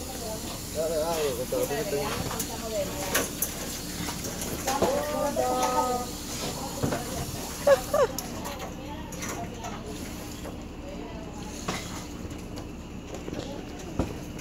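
Indistinct voices talking quietly in short stretches, with a few light clicks over a steady low hiss.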